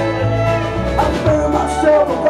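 Live country-folk band playing an instrumental passage: bowed fiddle, pedal steel guitar, upright bass, guitar and drums with cymbals. There are sliding notes about halfway through.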